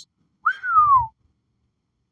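A man whistles one short note that rises briefly and then slides down in pitch, lasting about half a second.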